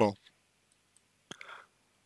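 A man's voice trails off at the very start, then near silence broken by a single sharp click and a short soft breath about a second and a half in, like a mouth click and inhale before speaking again.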